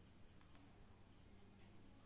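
Near silence: room tone with two faint computer mouse clicks close together about half a second in, a button press and release.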